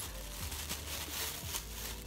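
Faint, irregular crinkling of a thin clear plastic conditioning cap being handled.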